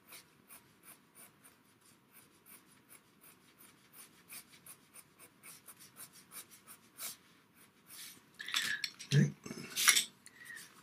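A pastel pencil scratching lightly on PastelMat paper in a quick run of short strokes, about five a second. Near the end come a few louder knocks and handling sounds.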